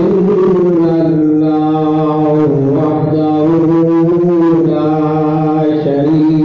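A man's voice chanting a melodic religious recitation in long held notes, the pitch sliding slowly from one note to the next with hardly a break.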